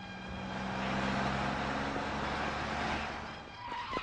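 A car driving up: engine hum and tyre noise swell and then fade away.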